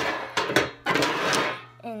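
Crinkling of a plastic candy-cane wrapper being handled: a sharp click, then three stretches of rustling crinkle. Speech starts near the end.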